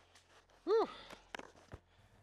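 A man's short wordless vocal sound, its pitch rising and falling, in an otherwise quiet pause, followed by a couple of faint clicks.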